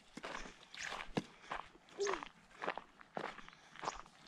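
Footsteps walking along a dry dirt footpath through dry grass, at a steady pace of about two steps a second.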